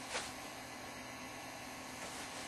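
Steady low electrical hum under a faint background hiss, with one brief swish just after the start.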